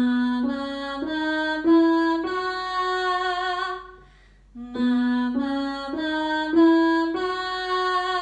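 A woman singing a pitch exercise on "ma" along with notes played on a digital piano: each phrase climbs in short steps and ends on a longer held note. There are two such phrases, with a short break between them about four seconds in.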